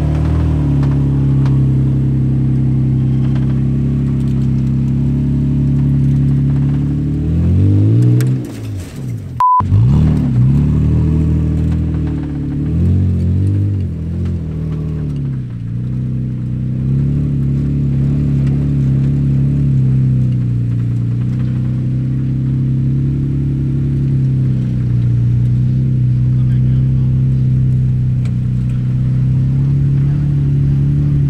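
Toyota Tacoma's engine working under load as the truck crawls up a sandy hill climb. The revs dip and rise about eight seconds in, the sound cuts out briefly just before ten seconds, and the engine then runs at a steady note.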